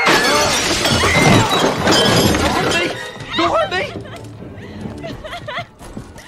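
Fight on a film soundtrack: a crash with glass shattering in the first two seconds, under loud shouts and screams, with score music beneath. Wavering cries follow about three seconds in, then the din drops off.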